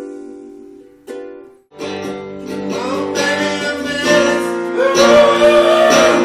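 A ukulele chord strummed and left ringing, with a second strum about a second in. After a brief gap, a fuller section comes in from about two seconds and grows louder: electric guitar with a man singing.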